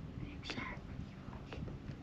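Faint, brief soft voice about half a second in, over a low, steady rumble of wind and water noise on the microphone.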